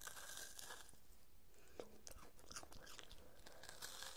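Faint crunching and chewing of a bite of a chocolate-covered Rice Krispies Squares bar, the crisped rice crackling in irregular short bursts.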